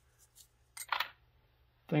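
Brief clink and rattle of metal hand tools being shifted in a steel cabinet drawer, about a second in.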